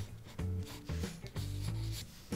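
Graphite pencil sketching on paper in a series of short strokes, with background music playing under it.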